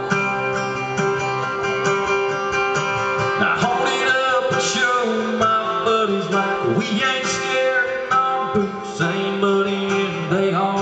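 Acoustic guitar playing a country ballad live, an instrumental passage with no sung words.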